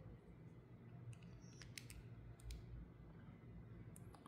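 Near silence: faint room tone with a few small, faint clicks as a Mitutoyo digital caliper is handled and its steel jaws are set against a small metal airgun valve part.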